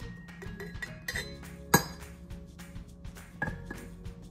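Clinks and knocks of a scoop and glass jars as flour is scooped from a glass canister into a glass mason jar, with one sharp clink ringing briefly a little under two seconds in. Background music plays underneath.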